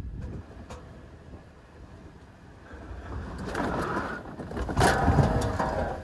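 Engines straining as a Dodge Caravan minivan pushes a Suzuki, stuck high-centred on a dirt hump, off in reverse, heard from inside the van. A low rumble swells from about halfway in as the wheels spin on the dirt, with a sharp knock near the end.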